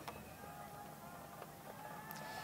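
Faint background sound from a stadium during a night football game: a low, even murmur with a few faint held tones.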